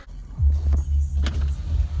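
A car's low, steady rumble heard from inside the cabin, starting abruptly about half a second in.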